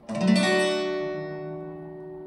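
Acoustic guitar with a capo on the second fret, a C major chord shape strummed once just after the start and left ringing, slowly fading.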